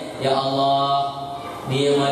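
A man chanting in a melodic, drawn-out voice into a handheld microphone: one long held phrase, a short break, then the next phrase beginning near the end.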